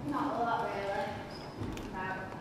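Indistinct voices with hard knocking steps on a wooden stage floor, and a single low thump near the end.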